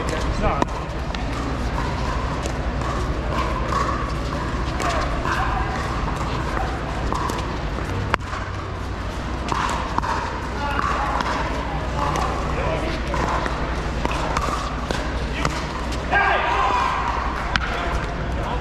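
Pickleball rally: hard paddles striking a plastic pickleball in a few sharp pocks, the clearest about eight seconds in, over a steady background of indistinct voices.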